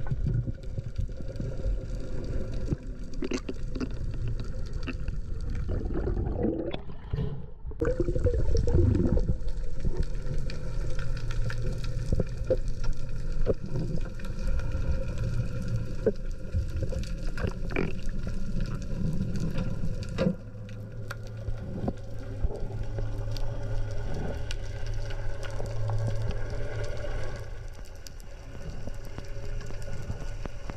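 Underwater ambience picked up by a diver's camera during a spearfishing dive: a steady low rumble of moving water with many scattered small clicks and crackles.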